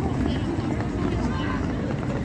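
City street noise: a steady low rumble of road traffic with indistinct voices of passersby.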